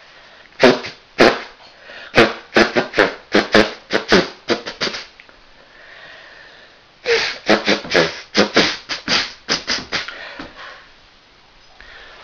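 A man blowing his nose into a tissue in a run of short, sharp blasts, about a dozen in quick succession, then a pause of a couple of seconds, then about ten more.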